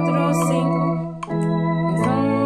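Organ playing a hymn in slow, sustained chords, the chord changing a little over a second in.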